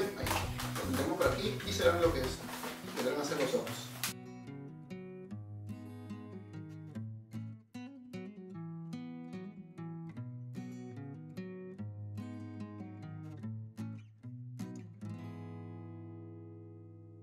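Acoustic guitar background music with plucked notes. For the first four seconds it is overlaid by squeaking and rubbing from latex modelling balloons being twisted. That layer cuts off abruptly about four seconds in, leaving only the guitar.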